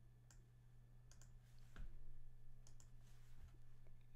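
Faint, scattered computer mouse clicks, about half a dozen, over a low steady hum.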